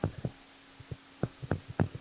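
About six soft, irregular clicks and taps from handwriting with a digital input device on a computer, over a faint steady electrical hum.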